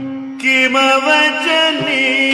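Carnatic music in raga Khamas: a steady drone with a sustained, gliding melodic line that comes in about half a second in, and a few light drum strokes.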